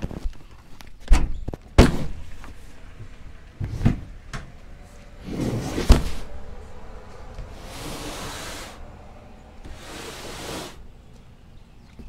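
Pickup tailgate being unlatched and lowered, with a click and a few hard thunks in the first half. Then a large cardboard box slides across the bed liner in three scraping pushes of about a second each.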